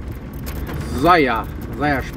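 Vehicle driving slowly on a dirt woodland track, a steady low engine and road rumble heard from inside the vehicle. A voice briefly vocalizes about a second in and again near the end.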